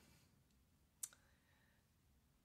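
Near silence with one short click about a second in.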